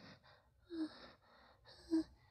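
A person panting and gasping for breath, with two short voiced gasps about a second apart.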